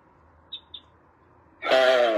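Near-quiet room tone with two brief, high chirps about half a second in, then a woman's voice starting to speak near the end.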